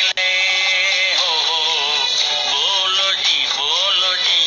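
A song: a voice singing long, wavering held notes over instrumental accompaniment. The sound cuts out for an instant just after the start.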